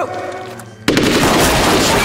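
Massed small-arms gunfire from a squad of rifles and submachine guns breaks out suddenly about a second in and continues as one dense, unbroken volley: troops opening fire together on the order for volley fire.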